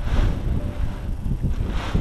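Wind buffeting the microphone: an uneven low rumble that surges twice, just after the start and near the end.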